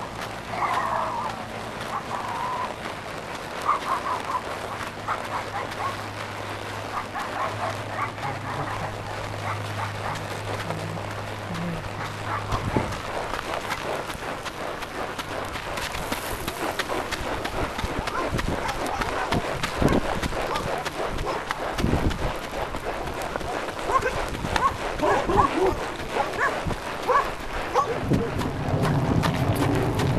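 Dogs barking and yipping at intervals, some way off. A steady low hum runs under the first half and stops partway through.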